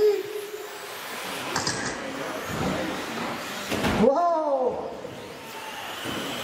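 2WD electric RC buggies racing on an indoor track: a steady whirring hiss of motors and tyres. A brief voice cuts in about four seconds in.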